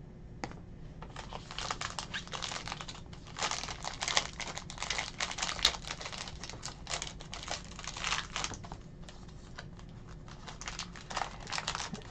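Foil trading-card pack wrapper handled and torn open by hand: irregular bursts of crinkling and crackling.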